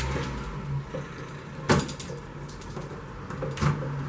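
A metal lead knife being worked and wiggled between a leaded stained glass panel and its wooden door frame: a sharp click a little under halfway through and a softer knock near the end as the blade shifts against the lead and glass.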